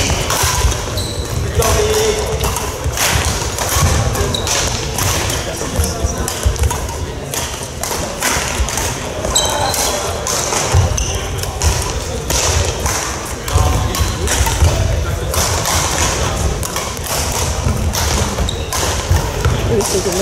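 Badminton rally in a sports hall: repeated sharp racket hits on the shuttlecock and thudding footsteps on the court floor, over a steady hubbub of voices and play from neighbouring courts.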